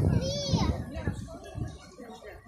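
A young child's voice: a brief high-pitched squeal about half a second in, with other vocalising around it, over low rumbling on the microphone that fades off in the second half.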